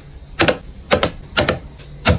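Cosmetic jars with lids being set down one after another on a shelf: a quick series of sharp clacks, about two a second.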